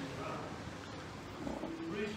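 Faint, indistinct voice fragments over a steady background hiss and low rumble.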